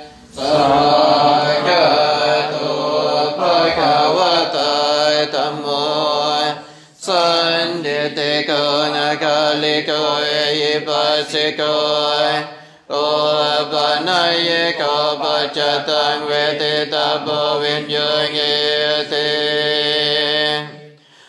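Pali Buddhist verses chanted in a steady, near-monotone voice, in three long phrases with short breath pauses about 7 and 13 seconds in.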